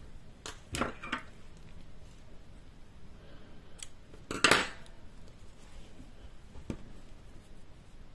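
Small scissors snipping a yarn tail at the edge of crocheted fabric: one louder snip about halfway through, with a few lighter clicks from handling the scissors before and after.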